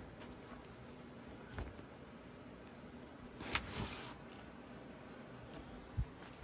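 Faint handling sounds of a gloved hand on a rusty steel dash panel in its cardboard box: a light tap about a second and a half in, and a brief rustling scrape a little past halfway.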